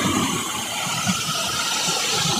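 Water pouring over a low dam spillway and churning in the tailwater below, a steady rushing noise with an uneven low rumble.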